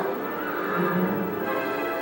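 Theatre pit orchestra playing underscore in held, sustained notes.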